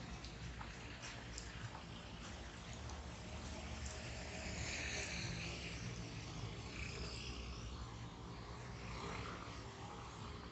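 Outdoor city street ambience: a steady low rumble of traffic that swells a little in the middle as a vehicle goes by, with a few faint clicks.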